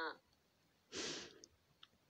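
A woman's breathy sigh about a second in, followed by a single faint click near the end.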